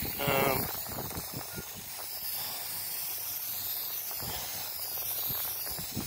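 Aerosol spray-paint can hissing steadily as a light dusting of paint is sprayed.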